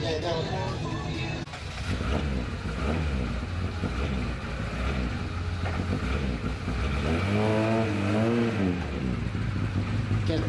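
Lada 2107 rally car's engine running, with one rev that rises and falls in pitch about seven seconds in as the car pulls away.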